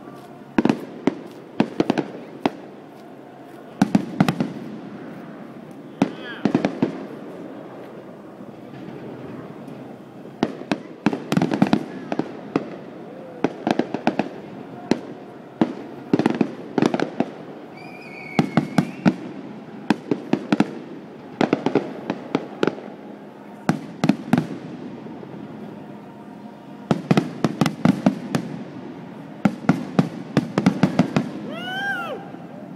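Aerial fireworks finale: volley after volley of shell bursts, sharp bangs coming in dense clusters every second or two.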